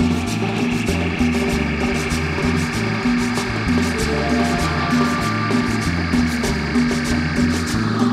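Live rock band playing a groove with a steady beat: drum kit with cymbals, a repeating bass line, congas and electric guitar.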